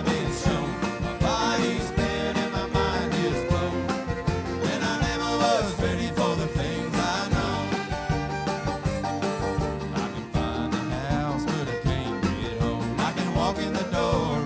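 Live bluegrass band playing an instrumental passage with banjo, fiddle, acoustic guitar and upright bass over a steady beat.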